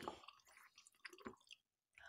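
Near silence with a few faint, short wet clicks as a toy feeding bottle of juice is held to a baby doll's mouth.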